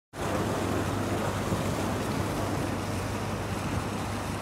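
Steady wind rushing and buffeting on the microphone, with a low rumble.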